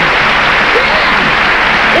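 Studio audience applauding steadily.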